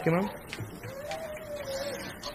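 A man's chanted reading in a sing-song study tune ends just after the start. About a second in, a faint drawn-out high note is held for about a second.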